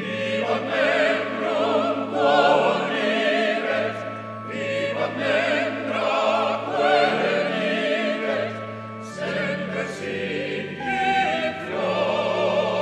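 University hymn sung by a choir, the voices singing with a marked vibrato over held low notes that move in steps from phrase to phrase.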